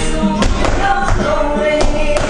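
Flamenco music in the tientos rhythm playing, with several sharp, irregularly spaced strikes through it that fit the dancer's shoe taps on the hard floor.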